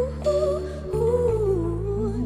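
Live soul-pop band: backing singers humming a wordless, gliding melody over sustained low chords that change about a second in.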